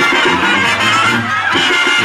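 Band music with brass and a steady bass beat, the bass notes repeating about twice a second.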